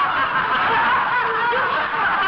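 A group of people laughing together, many voices overlapping in a steady mass of laughter.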